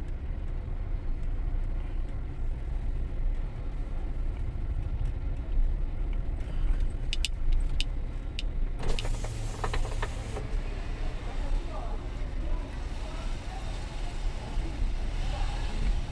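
Car driving slowly, heard from inside the cabin: a steady low engine and road rumble, with a few sharp clicks about seven seconds in and a short burst of brighter noise around nine seconds.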